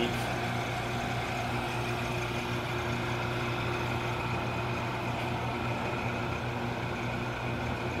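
Steady hum of a running glove box system, with its circulation blower on. It is a constant low drone with a few fainter steady tones above it, unchanging throughout.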